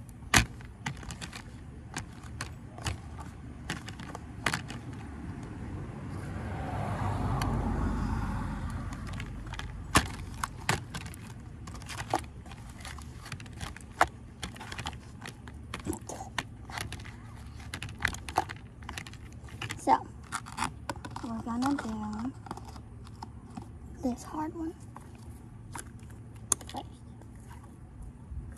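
Melted, sticky slime being poked and pulled by fingers in a plastic tub: a scatter of sharp clicks and pops. A low rumble swells and fades about a quarter of the way in.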